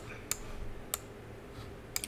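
A few sharp computer-mouse clicks, spaced irregularly, over a faint steady hum from the PC, which is running loud.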